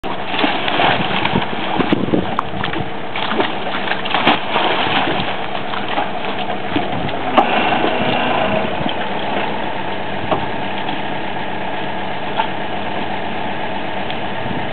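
Engine of a geotechnical drilling rig running steadily, with a few sharp knocks over it, the loudest about halfway through.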